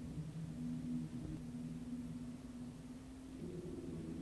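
Quiet, eerie horror-film score: low notes held steady, moving to a higher note about three and a half seconds in.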